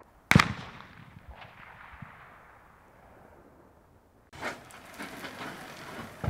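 A single target-rifle shot, its report echoing and slowly fading away over about four seconds. A steadier background noise with faint knocks then starts abruptly near the end.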